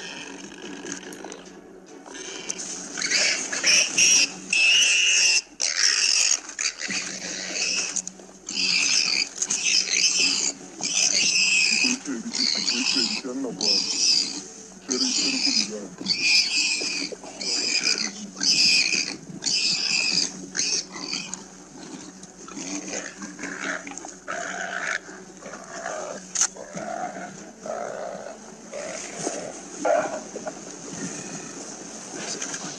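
An animal squealing in loud, repeated cries about once a second, which fade to weaker calls after about twenty seconds.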